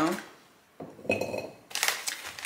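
Golden Double Stuf Oreo cookies dropped into a glass cookie jar, clattering and clinking against the glass with a brief ring, about a second in; a second short clink comes near the end.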